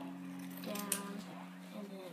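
An indistinct voice, with one sharp snip of scissors cutting a folded paper coffee filter about a second in.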